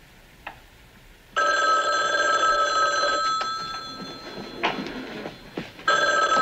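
Landline telephone bell ringing: one ring starts suddenly about a second and a half in, rings for about two seconds and fades away, and the next ring starts at the very end. A short knock comes between the rings.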